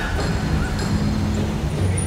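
Road traffic: a van and a car driving past, with a steady engine and tyre rumble.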